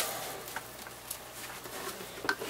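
Faint handling noise: a few light clicks over a low, steady hiss as the monitor and camera are moved about.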